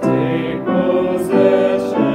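A small family group sings a hymn in parts, accompanied by an upright piano, with new chords about every half second or so.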